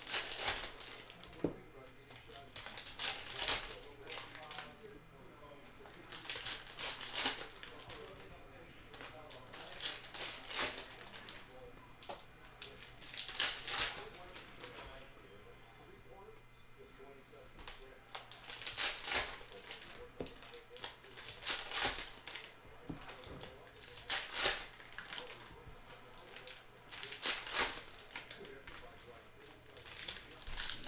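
Foil trading-card packs being torn open and crinkled by hand: a short rustling burst about every three seconds, with quieter handling of cards in between.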